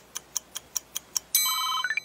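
Sharp ticking like a countdown clock, about five ticks a second. About a second and a half in, a telephone ringtone starts, ending in a quick rising sweep.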